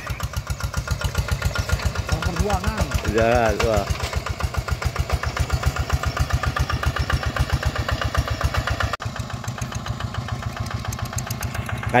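Single-cylinder diesel engine of a two-wheel hand tractor chugging steadily under load while ploughing wet paddy soil on cage wheels. A voice calls out briefly about three seconds in, and the engine sound breaks off abruptly for a moment about nine seconds in before carrying on.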